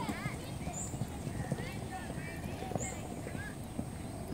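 Pony's hooves striking the sand of a riding arena in an uneven run of soft thuds as it moves off under its rider.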